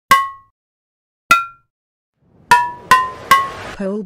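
Bell-like metallic percussion hits opening a trap instrumental: two single hits about a second apart, then three quicker ones, each ringing briefly and fading.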